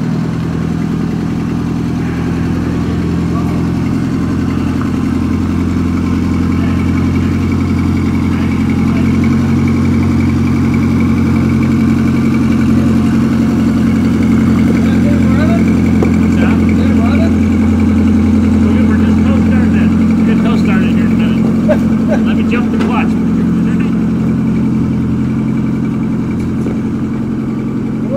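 Engine of a vintage John Deere 40 self-propelled combine running steadily at a constant speed, loud and even throughout.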